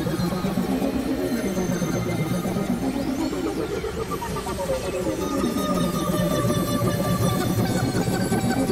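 Dense, cacophonous experimental electronic music: several layers of synthesizer tones and drones overlap, while a low tone sweeps slowly up and down in pitch a few times.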